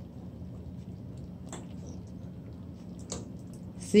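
A fork prodding soft stewed cow foot in a stainless steel pot, with two faint clicks over a low steady hum.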